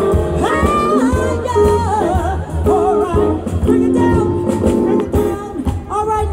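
Live soul band playing, with a woman singing lead over keyboard, drums and electric guitar; her voice slides between notes and wavers with vibrato on held notes.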